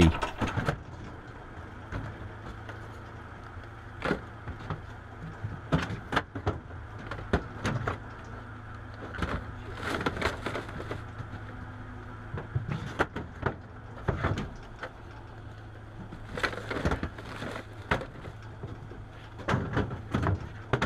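Plastic traffic cones being lifted, dropped and stacked on the metal deck of a traffic-management truck, a run of irregular knocks and clatters, over the steady low hum of the truck's engine running.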